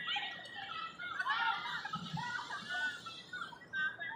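Children shrieking and laughing, many high-pitched voices overlapping in short rising and falling cries.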